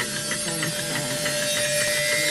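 A steady hiss of noise with a thin, steady held tone coming in about half a second in.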